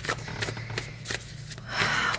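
A deck of tarot cards being shuffled by hand: a run of light card clicks and rustles, with a louder swish near the end.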